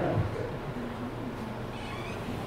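Audience laughing softly and murmuring in a large hall after a funny line, fading away.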